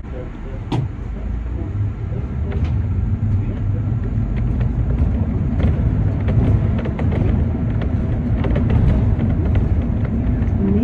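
City bus engine and drivetrain running, heard from inside the bus, getting louder as it picks up speed along the street, with a low rumble and scattered short rattles.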